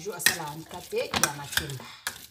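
Metal wire potato masher knocking and scraping against a stainless steel pot as boiled plantains are mashed, with several sharp clinks. A low voice runs underneath.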